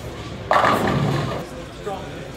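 Bowling ball crashing into the pins about half a second in, the clatter dying away over about a second, over the steady chatter of a busy bowling alley.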